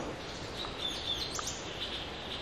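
A small bird calling in the forest canopy: a quick run of high, thin chirps with short up-and-down sweeps about a second in, and a few fainter chirps near the end, over a steady forest hiss.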